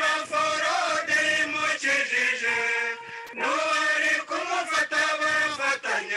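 Chanted singing by male voice, in held notes with short breaks, with a brief pause about three seconds in.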